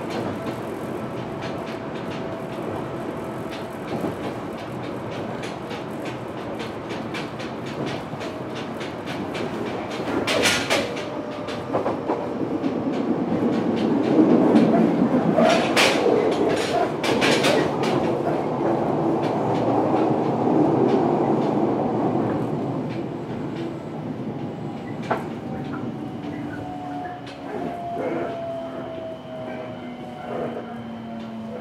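Fukuoka City Subway 1000N-series train running, heard from inside the car: a steady rumble with wheels clacking over rail joints, louder for several seconds midway. Near the end a motor whine falls in pitch as the train slows.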